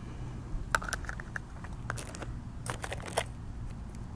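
Light clicks and taps of a camping mess kit's cups, pots and utensils being handled and set against each other, a scattered dozen or so in small clusters.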